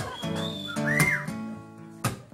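Acoustic guitar picking chords, with a person's high whistle gliding up and down over it in the first second.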